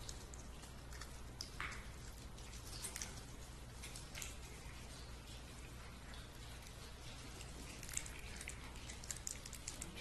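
Faint scattered clicks and short rustles of small communion cups being handled and drunk from, over a steady low electrical hum.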